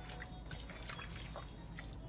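Faint, irregular wet squelches and sticky clicks of a bare hand mixing spice-marinated raw chicken pieces in a pan, over a steady low hum.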